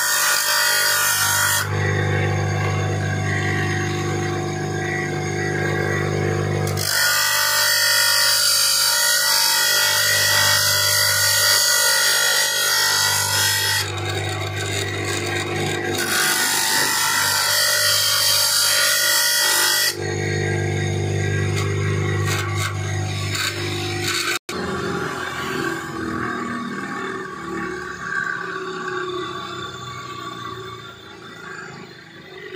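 Bench grinder motor running with a steady low hum, broken by three long spells of harsh grinding as the steel tip of a Fiat tractor rocker arm is pressed against the abrasive wheel. The sound breaks off sharply about three-quarters of the way through, and a fainter, different sound follows.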